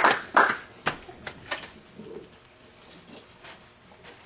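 A few scattered handclaps from the congregation, dying away over the first second and a half, then quiet room tone with a few faint taps.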